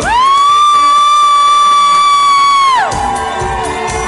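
A single long, shrill whoop from an audience member close to the microphone: it rises at the start, holds one high pitch for nearly three seconds, then drops away. Organ-like keyboard music plays underneath.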